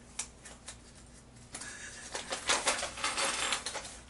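Small plastic figure pieces clicking, then a foil blind bag crinkling and rustling as it is handled, denser from about a second and a half in.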